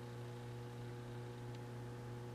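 A steady low electrical hum with faint background hiss; nothing else sounds.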